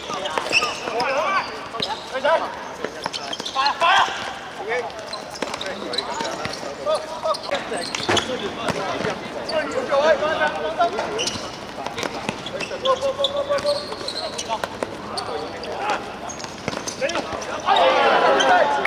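Futsal ball being kicked and bouncing on a hard court, sharp knocks scattered through, the loudest about eight seconds in, with players shouting to each other throughout.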